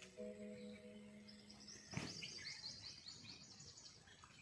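Faint background sound: a steady low hum for the first two seconds, then a bird's rapid, high-pitched chirping for the rest, with a single click about two seconds in.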